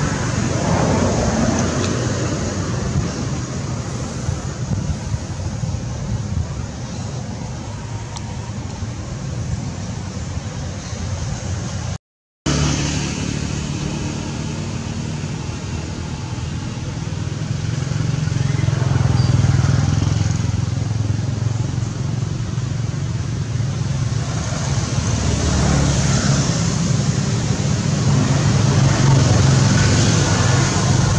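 Steady motor-vehicle engine noise that swells twice in the second half. The sound cuts out for a moment about twelve seconds in.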